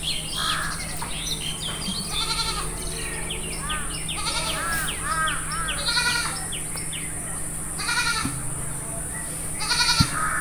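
Birds chirping and calling, many short calls overlapping, with a few louder calls in the middle and near the end.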